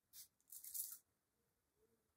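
Small perfume sample atomizer spraying onto the wrist: a brief hiss, then a longer one about half a second in.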